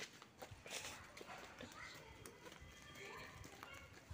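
Near silence: faint footsteps and soft knocks as the phone is carried, with faint voices in the background.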